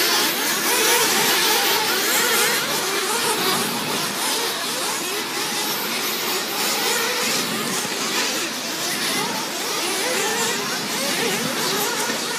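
A field of 1/8-scale nitro RC buggies racing together. Their small two-stroke glow-fuel engines whine at high pitch, many overlapping, rising and falling as the buggies accelerate and brake around the track.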